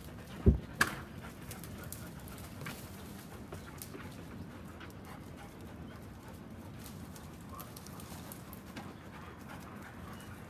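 A dog, an Irish setter, gives a single short low bark about half a second in, followed closely by a sharper click; after that only a faint steady background with a few small ticks.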